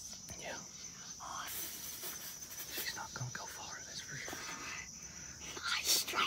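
Hushed, excited whispering by a boy, with a steady high-pitched tone running underneath.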